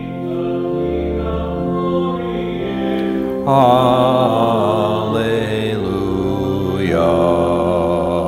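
A church organ holds sustained chords under a hymn sung by a voice with wide vibrato. The singing swells louder about three and a half seconds in.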